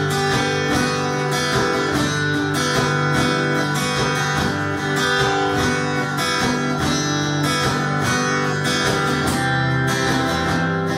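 Acoustic guitar played solo, a steady run of picked notes and strummed chords.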